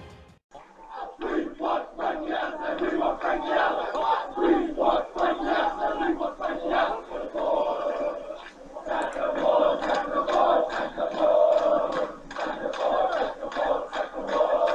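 A large crowd of football supporters chanting together, loud massed voices coming in repeated pulses. It starts about half a second in.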